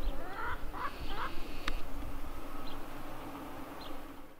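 Three short chicken calls in quick succession about half a second in, then a single sharp click, over a low rumble and a faint insect buzz.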